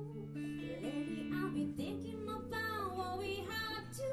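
Live band music: a woman singing a melody into a microphone over electric guitar and sustained chords.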